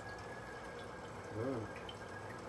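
Aquarium filter running, its water trickling and splashing steadily, with a faint steady high tone over it.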